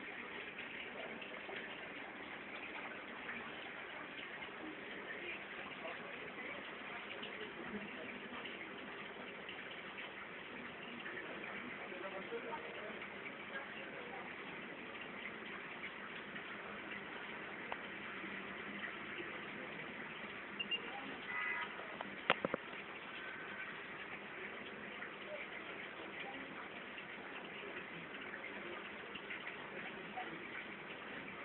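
Steady background hum of a shop with indistinct voices and a constant water-like hiss. A brief cluster of sharp clicks comes about two-thirds of the way through.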